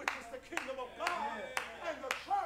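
Sharp, even strikes about twice a second, over a man's voice talking.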